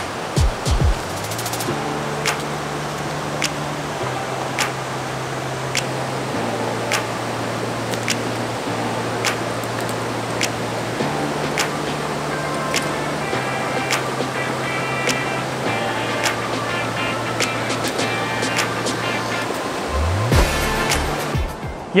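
Background music with a steady beat and a bass line that changes note every couple of seconds, over the continuous rush of a river.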